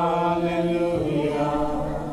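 A man singing a slow worship song, holding long notes with a brief break about a second in.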